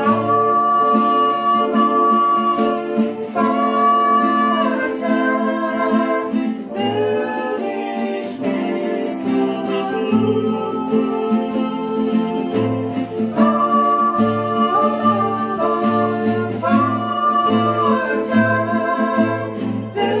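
A man and a woman singing a worship song together, with acoustic guitar accompaniment, in long held lines.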